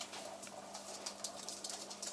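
Claws of Sheltie dogs ticking lightly and irregularly on a wooden floor as they move about.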